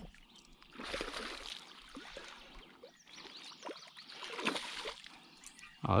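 Light splashing and lapping water around a small boat, with a few faint knocks and clicks.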